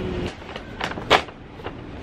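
Kraft paper bag rustling and crackling as it is pulled open by its handles: a few sharp crinkles, the loudest just past the middle.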